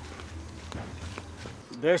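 A few soft footsteps on a dirt path over a low steady outdoor rumble. The rumble cuts off near the end as a man starts speaking.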